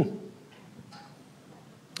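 A man's short, puzzled "hmm" at the start, then quiet room tone with a few faint ticks.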